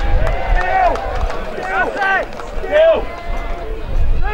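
Several voices of players and onlookers shouting and calling out, each shout rising and then falling in pitch, over a low rumble.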